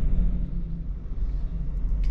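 Ford Ranger diesel pickup heard from inside the cabin while driving slowly: a steady low rumble of engine and road noise.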